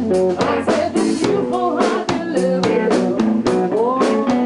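Rock band playing live on drum kit and guitar, with a woman singing.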